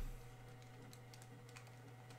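A few faint, scattered key clicks over a steady low electrical hum, heard while 150 ÷ 3.75 is being worked out.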